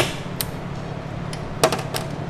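Click-type torque wrench clicking on the driveshaft CV adapter bolts as they reach the set torque of 47 ft-lb. There is a sharp metallic click right at the start and another about a second and a half in, with fainter clicks between them and near the end.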